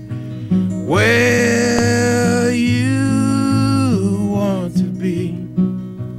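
Acoustic guitar playing under a voice that holds one long sung note for about three seconds, stepping up in pitch partway through, then the guitar carries on alone.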